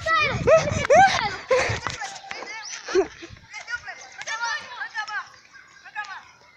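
Children's voices shouting and shrieking in high pitches, with no clear words; loud in the first two seconds, then fainter.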